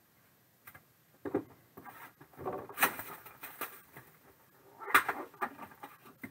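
Plastic shrink wrap crinkling and tearing as it is pulled off a boxed trading card product, with light knocks of cardboard and a plastic card case being handled. The rustling is irregular, with its loudest bursts about three and five seconds in.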